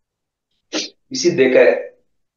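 A man's voice speaking a short phrase in a small room, preceded less than a second in by a brief breathy burst such as a sharp breath or sniff.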